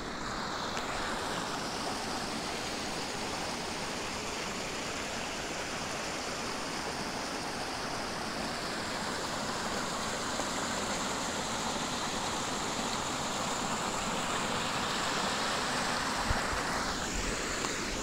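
Shallow wadi water running steadily over the concrete bed and stones under a road bridge. There are a couple of brief low knocks near the end.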